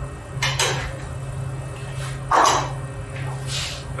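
Three short rustling sounds as a filled pita falafel wrap is handled and folded, the middle one loudest, over a steady low hum.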